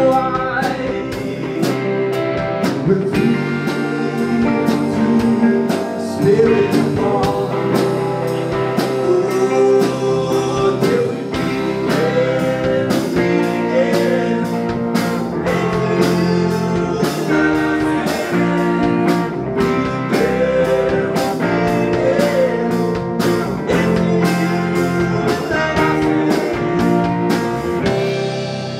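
Live rock band playing a bluesy jam: electric guitar and drum kit with a singing voice.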